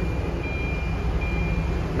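Steady low rumble of an idling engine, with a faint thin high-pitched tone that comes and goes over it.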